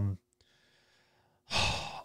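A man's breath, a short sigh close on the microphone about one and a half seconds in, after a pause of near silence.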